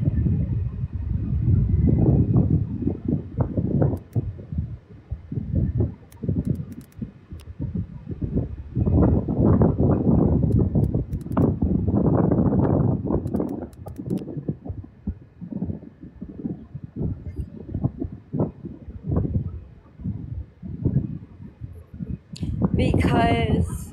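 Low, uneven rumbling and rustling right at a phone's microphone, with a few faint clicks. It swells twice, for the first few seconds and again in the middle, and is loud and close up.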